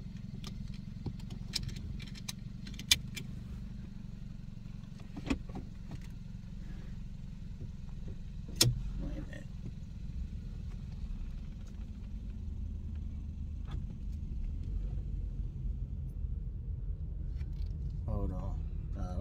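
Car engine idling, a steady low hum heard inside the car's cabin, with a few sharp clicks and taps scattered through, the loudest a little before the middle.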